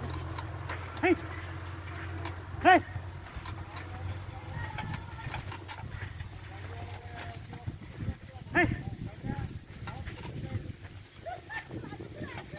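A man's short shouted "hey!" calls, three times, urging a pair of bullocks being trained to pull a cultivator. Beneath them is light rattling and clicking from the bullock-drawn implement working through the soil.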